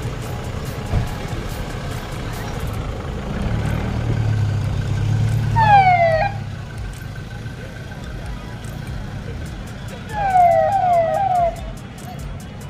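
Roof-mounted siren speaker on a Toyota Innova giving a short falling whoop about six seconds in, then three quick falling whoops near the end, over the low running of the car's engine as it pulls away.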